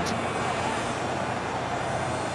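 Stadium crowd noise from football spectators: a steady wash of many voices.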